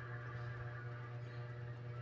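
A steady low hum, with faint sustained tones above it.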